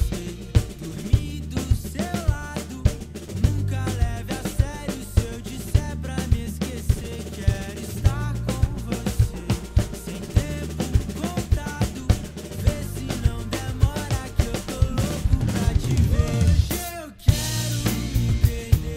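Acoustic drum kit played along to a pop-rock backing track without vocals: steady kick drum and snare strokes under bass and melodic guitar lines. Near the end the music drops out for a moment and comes back in with a loud hit.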